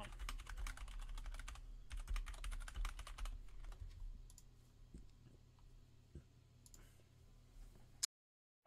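Typing on a computer keyboard: a quick run of keystrokes for about three and a half seconds, then only a few scattered clicks.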